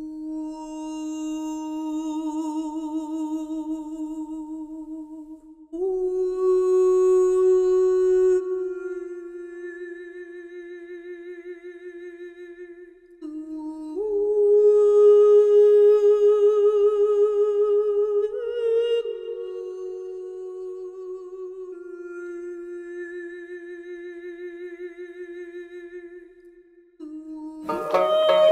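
A single wordless voice humming a slow melody alone, in long held notes with vibrato, each lasting several seconds and stepping up and down in pitch.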